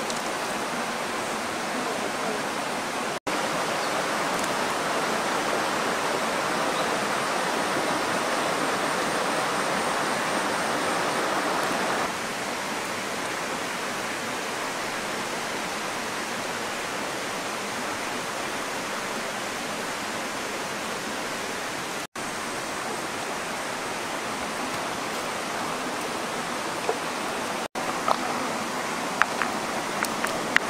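Shallow rocky stream running steadily over stones, an even rushing of water with a few brief dropouts at cuts.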